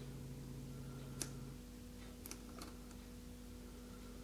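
A quiet room with a steady low hum, one faint click about a second in and two softer ticks a little later, from fingers handling a small plastic model part.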